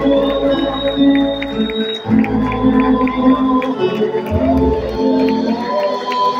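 Live band of acoustic guitars and drums playing a folk song, with held chords and sustained notes.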